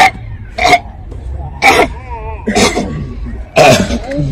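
A person coughing hard in five loud, harsh bursts about a second apart.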